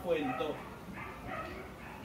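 A man's voice through a microphone trails off at the end of a phrase about half a second in, followed by a brief pause with faint background sound.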